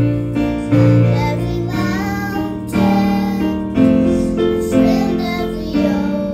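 Casio electronic keyboard playing piano-voice chords, struck about once a second, as a ballad accompaniment. Children's singing voices come in about two seconds in and carry the melody over the chords.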